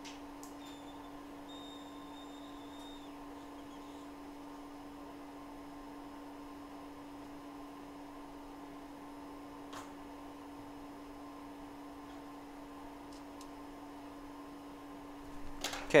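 Steady electrical hum from microsoldering bench equipment, with a faint thin high tone for about two seconds near the start and a single faint tick about ten seconds in.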